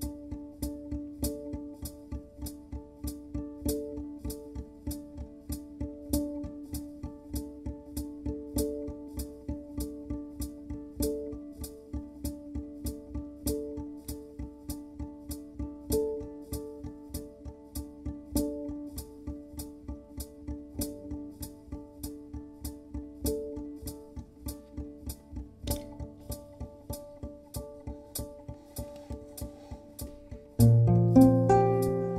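Electric domra playing a live improvisation layered with a loop processor: evenly spaced plucked notes, about two a second, over a steady low sustained tone. A louder accented phrase recurs about every two and a half seconds.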